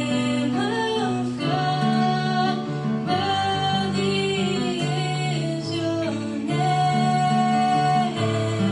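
A girl singing solo into a microphone over instrumental accompaniment, holding long notes.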